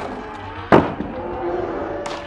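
A skateboard striking a car's cracked windshield, one sharp bang about three quarters of a second in, over a crowd shouting and cheering.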